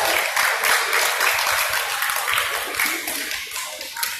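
Crowd clapping at ringside, a fast patter of hand claps that gradually dies down.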